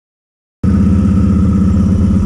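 An ATV engine running steadily, cutting in suddenly about half a second in after silence.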